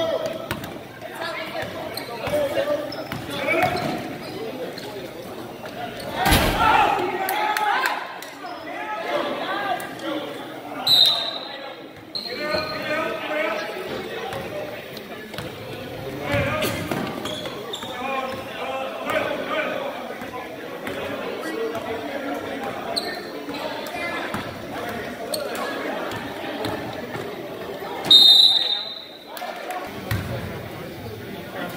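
Basketball game in a gym: the ball bouncing on the court amid crowd voices, with a loud knock about six seconds in. Two short high-pitched tones sound, one about a third of the way through and a louder one near the end.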